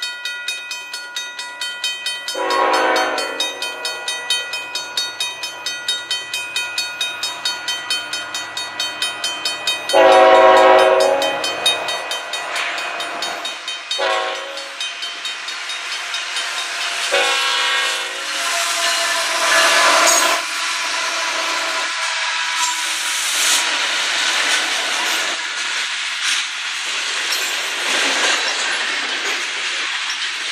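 CN freight train led by GE ET44AC diesel locomotives sounds its horn in the long, long, short, long grade-crossing pattern over a bell ringing quickly and steadily. The locomotives then pass close by, followed by tank cars rolling past with wheel clatter.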